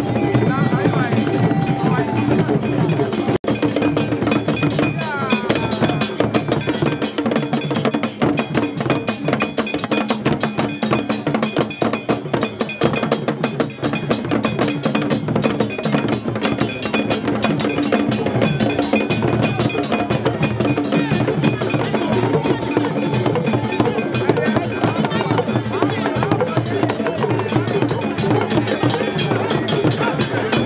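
Drum and percussion music playing steadily with dense, rapid strikes, over a crowd's voices.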